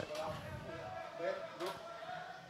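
Faint, distant voices calling out across an open football pitch, over the stadium's background ambience.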